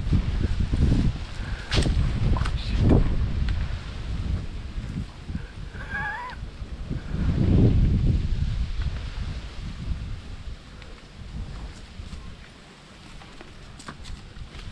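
Low rumbling bursts of wind and handling noise on the microphone of a camera carried along a dirt path, loudest in the first few seconds and again about seven to eight seconds in. A single short, wavering animal call sounds about six seconds in.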